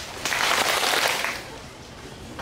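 A group of shrine worshippers clapping their hands together in the ritual Shinto handclap (kashiwade). The many slightly unsynchronised claps merge into one ragged burst that starts about a quarter second in and lasts about a second.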